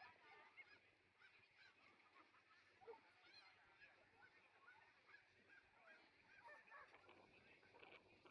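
Near silence: faint outdoor background with many short, scattered calls.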